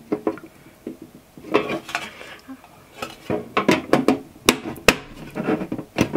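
Metal lid of a perfume gift tin being fitted and pressed shut: scattered metallic rattles and clicks, with two sharp clicks near the end.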